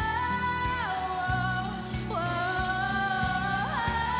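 A high female voice belts long, held, wordless notes, sliding up and down between pitches over a sustained live band accompaniment.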